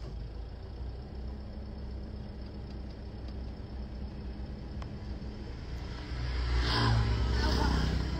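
Steady low rumble of a car heard from inside its cabin, with a steady hum through the first half; the rumble grows louder about six seconds in.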